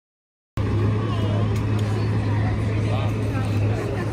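Silence for about half a second, then people chattering over the steady low hum of an idling bus engine.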